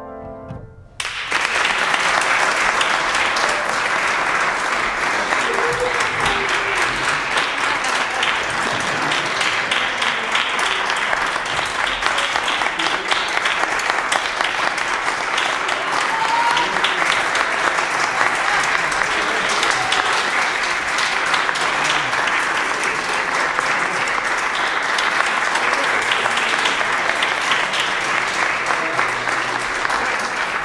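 A grand piano's last note fading out, then an audience applauding steadily from about a second in.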